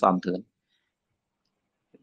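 A man speaking Khmer, his words ending about half a second in, then dead silence broken only by a faint click near the end.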